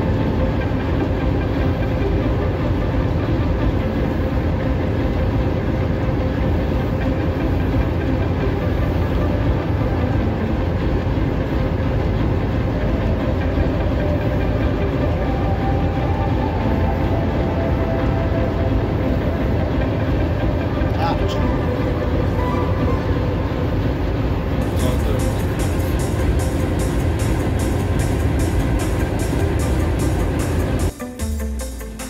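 Locomotive engine running, a loud steady rumble heard inside the cab.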